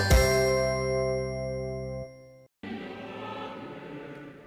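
TV title jingle: a bell-like chime strike rings into a held chord that fades and cuts off about two seconds in. After a brief silence, a choir with orchestra starts up softly.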